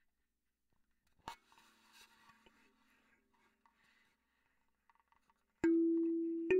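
Wooden kalimba: a soft click about a second in with a faint ring and a few small clicks after it, then near the end the first clearly plucked tine note rings out and sustains.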